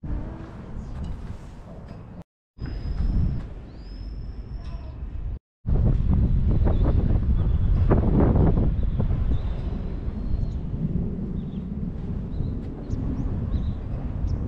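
Outdoor ambience dominated by wind rumbling on the microphone, with a few short, high bird calls early on. The sound cuts out briefly twice.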